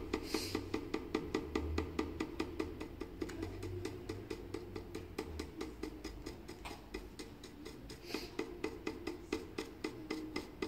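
A stencil brush dabbing gold metallic paint through a stencil onto a painted wooden cigar box, tapping quickly and evenly at about four dabs a second.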